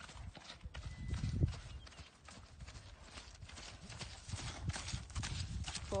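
Hoofbeats of a bay horse moving briskly on grassy turf, a quick run of soft thuds with no steady beat.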